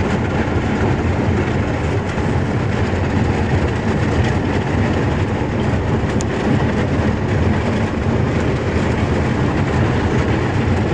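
Thin sea ice, about half an inch thick, breaking, crackling and grinding along a small boat's hull as the boat plows through it, over the boat's engine. A loud, steady, rattling noise.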